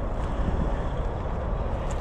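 Wind buffeting the microphone: a steady, low rumble.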